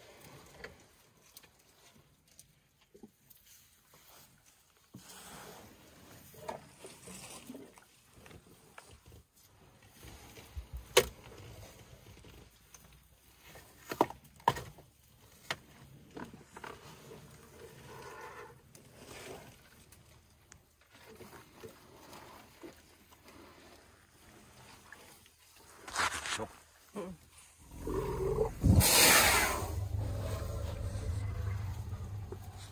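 African elephants stripping and chewing marula tree bark: scattered sharp cracks and snaps of bark and wood, a few of them loud, over quieter crunching. Near the end comes a loud rushing burst with a low rumble.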